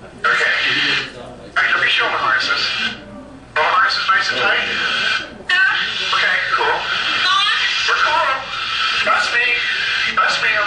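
Indistinct voices from the soundtrack of an in-cockpit aerobatic flight video playing over room speakers, with short pauses and a faint steady high tone underneath.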